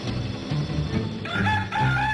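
Low, slow bowed-string music, then a rooster starts crowing a little past halfway through, a crow that greets daybreak.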